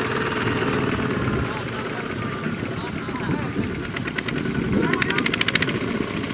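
Kubota ZT120 single-cylinder diesel engine of a two-wheel walking tractor running. About four seconds in, a fast, even clatter of roughly ten beats a second joins it for about two seconds.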